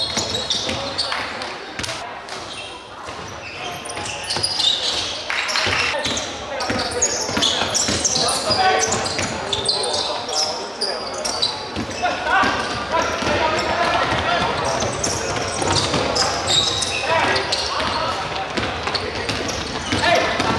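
Basketball game sounds in a large sports hall: the ball bouncing on the wooden court amid players' indistinct shouts, all with a hall echo.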